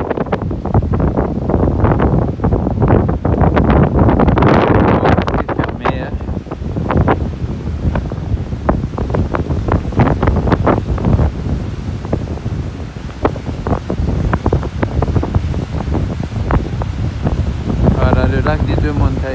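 Strong gusting wind buffeting the microphone, with choppy waves from the wind-driven lake washing on the shore beneath it. The gusts are loudest in the first several seconds and ease a little afterwards.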